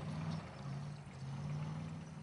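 Tank engine running: a steady low hum with a faint hiss over it.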